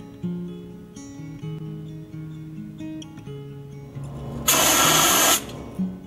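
Fire extinguisher discharging: a loud hissing burst lasting just under a second, about four and a half seconds in, over background acoustic guitar music.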